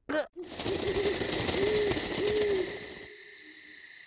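Night-forest sound effect: an owl hooting several times, the last two hoots longer, over a steady high hiss. The hoots stop a little under three seconds in, leaving only the faint high hiss.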